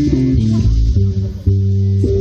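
Live band playing on stage: electric guitars and bass guitar holding low, sustained notes, with a brief break about one and a half seconds in before the full band comes back in.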